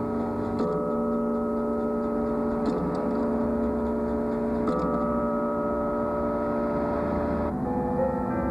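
Antique clock striking: hammers hitting deep-toned bells, a fresh stroke about every two seconds, each note ringing on under the next. The ringing stops shortly before the end.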